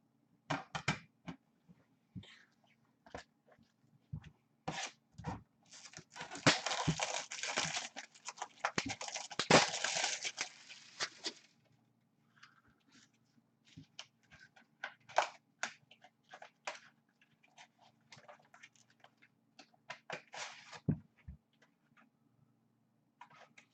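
Handling of trading-card boxes and hard plastic slab cases: scattered clicks and taps, with a continuous crinkling tear of wrapping from about six to eleven seconds in, as a sealed card box is opened.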